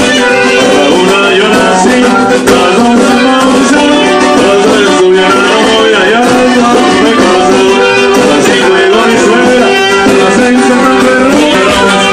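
Live conjunto norteño band playing loud, dense music, an accordion and a saxophone carrying the melody over the band.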